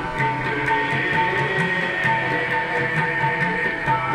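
Harmonium playing steady held notes, with tabla keeping a regular rhythm beneath.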